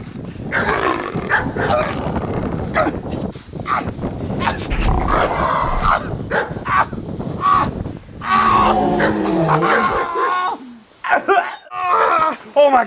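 A person growling and roaring like a beast while two men wrestle on the ground, with grunting and scuffling. Near the end comes a drawn-out groan that falls in pitch, then a short lull.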